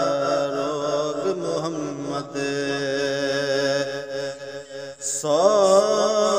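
A man singing a Punjabi Sufi kalam, holding long ornamented notes with a wavering pitch. About five seconds in the voice breaks off briefly, then comes back on a rising note.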